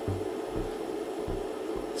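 Steady low hum with hiss: background room tone, with no distinct event.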